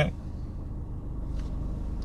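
Car engine idling, a low steady rumble heard from inside the cabin.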